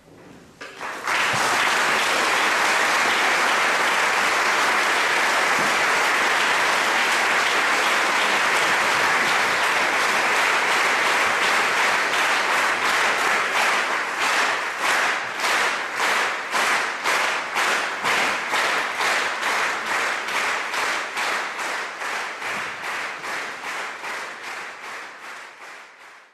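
Concert-hall audience applauding at the end of an orchestral piece. The applause starts about a second in, and after about twelve seconds it falls into rhythmic clapping in unison, about two to three claps a second, fading near the end.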